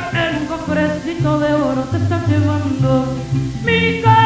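Mariachi band playing, violins and guitars over a stepping bass line, with a woman's ranchera singing voice coming back in strongly near the end.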